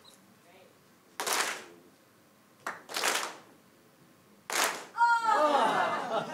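A hall audience clapping together in single group claps, three times about a second and a half apart, following a leader's claps in a clap game. Near the end, crowd voices break out.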